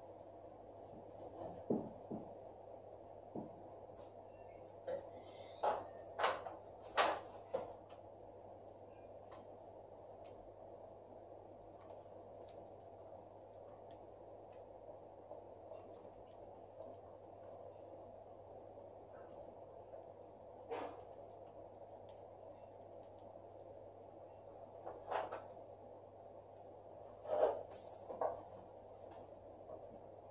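Steady low room hum, broken by scattered short taps and knocks. They come in a cluster about six seconds in and again near the end, typical of a marker writing on a whiteboard and of small handling noises.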